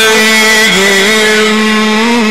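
A male Quran reciter in the Egyptian melodic mujawwad style holding one long vowel note. The note steps down slightly in pitch under a second in and wavers a little near the end.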